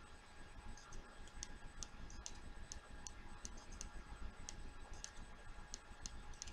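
Faint, short, sharp clicks at an uneven pace, two or three a second, over a low steady hum: clicking through a contact list while looking for someone to call.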